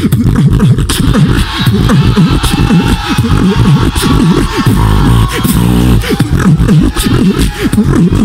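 Human beatboxing through a microphone and PA: a loud, wobbling bass line that glides up and down in pitch, cut through by sharp click and snare sounds in a steady rhythm. It is a dubstep-style "dirty bass" routine.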